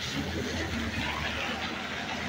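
Steady street noise on a wet night: a continuous hiss over a low engine hum from vehicles on the street.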